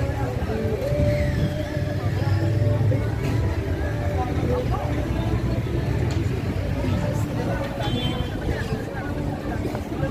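Outdoor city ambience: voices of people talking nearby over a steady low rumble of road traffic.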